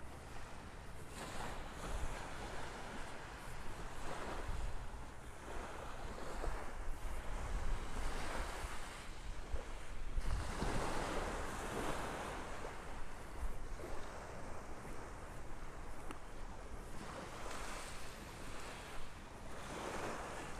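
Small Gulf of Mexico waves washing onto a sandy beach, swelling and fading every few seconds, with wind rumbling on the microphone.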